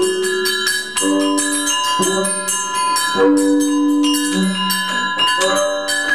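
Free-improvised avant-jazz from electric guitar, double bass and drum kit: sustained low notes about a second long change every second or so over many ringing high tones and frequent sharp strikes.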